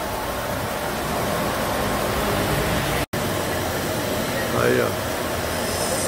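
1980 Ford Landau's V8 idling with its air-conditioning compressor engaged, a steady mechanical drone, while the A/C system is being recharged with refrigerant gas. The sound drops out for an instant about three seconds in, then resumes unchanged.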